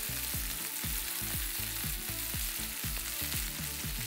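Ground-beef burger patties sizzling steadily in a hot cast iron skillet, searing on their second side.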